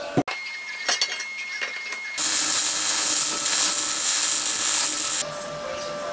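An electric arc welder running for about three seconds, starting and cutting off suddenly, a steady hiss as a weld bead fixes the steel shaft key to the pulley's steel discs. A few light metallic clicks come before it.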